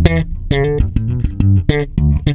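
Electric bass guitar played solo: a quick run of plucked notes with sharp attacks, about five a second.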